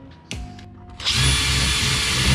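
Cordless drill running steadily at speed from about a second in, boring a hole in the wiring board so a wire can pass through.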